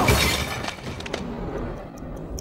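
Film sound effect of bodies crashing down onto a dinner table laid with dishes and glassware: breaking, shattering crockery, loudest right at the start and dying away with a few scattered clinks, over the film's music score.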